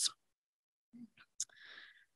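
A pause in a woman's speech: her last word trails off at the start, then near silence, with a faint quick intake of breath shortly before she goes on.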